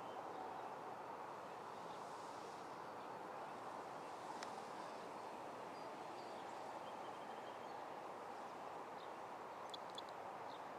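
Faint, steady outdoor background hiss over an open field, with a few brief high chirps from birds and a single light click about four and a half seconds in.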